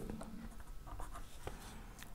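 A pen writing on paper, faint, in a few short strokes as an arrow symbol is drawn.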